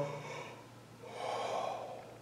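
A man's deliberate open-mouthed yawn, demonstrating a deep, open-throated breath. A faint voiced start trails off, then a breathy rush of air comes about a second in and lasts about a second.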